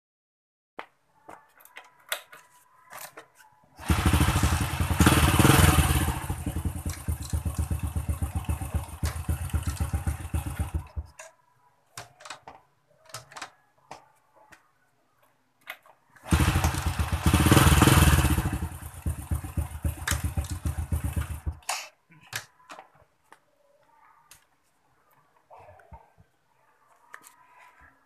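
Honda Supra motorcycle's single-cylinder four-stroke engine started twice. It runs for about seven seconds, louder at first and then settling, stops, and about five seconds later runs again for about five seconds before stopping. Light clicks and handling knocks fall between the runs.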